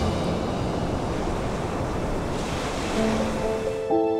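Ocean surf breaking and washing against rocky cliffs, a steady rushing noise; soft music comes in near the end.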